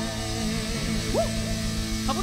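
Live rock band playing: a long sung note ends as the band holds a chord over a steady kick-drum pulse, with a couple of short high swoops about a second in.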